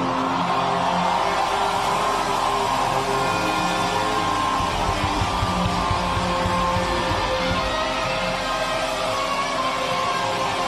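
Rock band playing an instrumental song intro led by electric guitar, with no singing.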